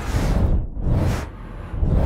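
Synthesized sound-design texture from the Reaktor Metaphysical Function preset 'Resonant Flame': a deep rumble under noisy, whooshing swells that rise and fall about once a second.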